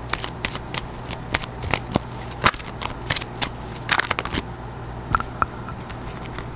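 A deck of tarot cards being shuffled and handled, giving irregular sharp snaps and flicks of the cards, with a denser run of them about four seconds in.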